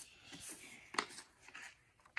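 A sheet of paper being handled and folded on a lap desk: faint rustling with a light tap about a second in.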